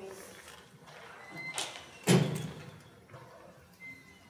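Knocks and rustles at a lectern picked up by its microphone, with one loud bump about two seconds in, as a laptop is worked and the speakers change places.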